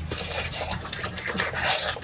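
Close-miked eating: a mouth chewing and biting into food, with a dense run of short, scratchy crackling sounds.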